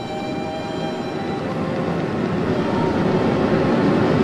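A rushing, rumbling drone with faint held tones over it, swelling slowly louder: a dark soundtrack swell laid under the footage.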